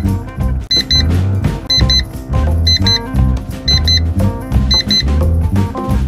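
Upbeat jazzy background music with a pulsing bass line, over which a pair of short high beeps sounds about once a second, ending about a second before the close.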